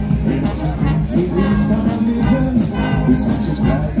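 Fanfare band playing an upbeat tune: a sousaphone carries the bass line under trumpets and percussion.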